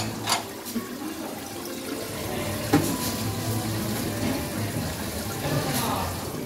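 A steady rush of running water under faint background voices, with two short clicks: one just after the start and one near three seconds in.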